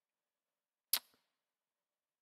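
A single sharp click about a second in, followed by a fainter tick, against dead silence.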